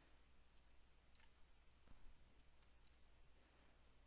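Near silence: room tone with a steady low hum and about five faint clicks of a computer mouse.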